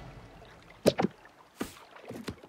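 Cartoon whoosh sound effects: two quick swishes close together about a second in, then a fainter one near the end.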